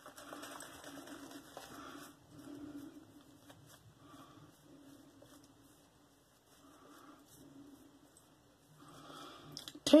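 Shaving brush working lather onto a face: quiet, soft swishing strokes that come in bursts with short pauses between them.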